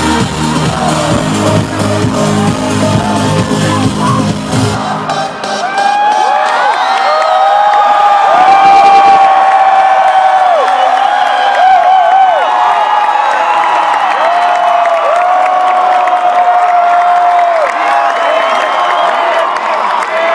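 Electronic dance-pop track with a heavy beat over an arena sound system, cutting off about five seconds in. A large crowd then screams and cheers, with many high, wavering screams.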